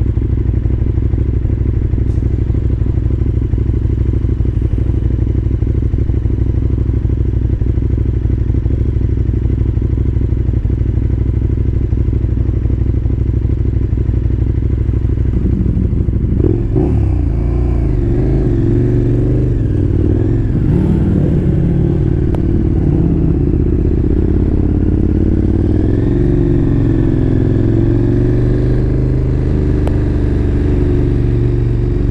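KTM motorcycle engine idling steadily. About halfway through it revs as the bike pulls away, its pitch rising and falling through the gears.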